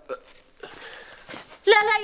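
A woman sobbing in short, catching breaths, then crying out a loud, high-pitched 'lā!' ('no!') near the end.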